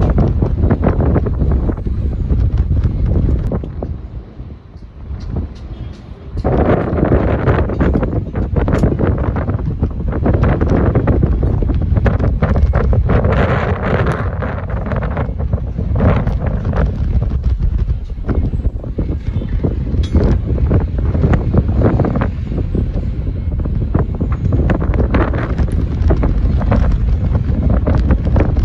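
Wind buffeting the microphone high up on a tower crane, loud and gusting, easing off briefly about four seconds in before picking up again.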